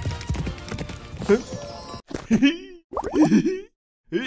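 Galloping horse-hoof clip-clop sound effect over music, which stops about two seconds in; then a few short vocal exclamations with brief silent gaps between them.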